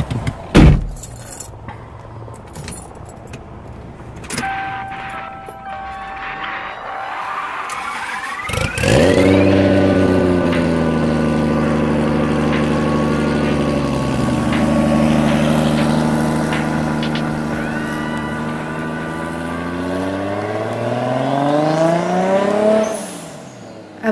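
A car engine sound: a loud thump about half a second in, a rising whine from around six seconds, then the engine catches just before nine seconds, settles into a steady run and revs up again near the end before cutting off.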